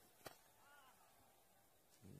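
Near silence, broken about a quarter of a second in by one faint, sharp knock: a cricket bat striking the ball.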